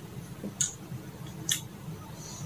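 Two short, wet mouth clicks about a second apart: lips smacking while a mouthful of red bean milk tea is tasted, over a low steady room hum.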